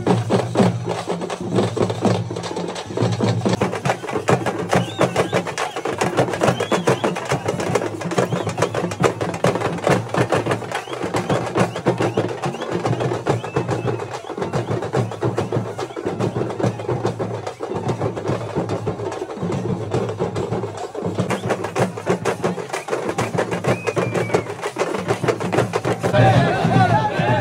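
Street procession drum band playing fast, continuous drumming with sharp, rapid stick strikes and a steady rhythm.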